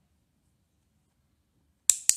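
Near silence, then a single sharp click near the end that marks the parakeet's completed spin.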